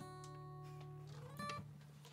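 The last chord of a song on acoustic guitar ringing out and slowly fading, with a brief upward slide in pitch about one and a half seconds in.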